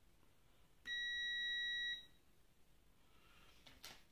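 A single electronic beep: one steady high-pitched tone about a second long, starting about a second in and cutting off sharply.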